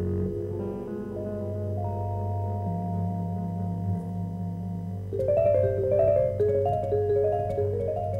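Vibraphone played with round-headed mallets in a jazz piece: long ringing notes, then about five seconds in a quicker, louder run of notes.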